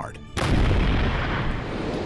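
An explosive charge in a mound of earth blowing up: a sudden loud blast about half a second in, followed by a long rumble that slowly dies away.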